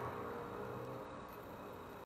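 A quiet pause: faint room tone and hiss, with the tail of the voice's echo fading at the start.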